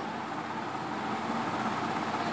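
Steady background noise, an even hiss without distinct strokes, between spoken phrases.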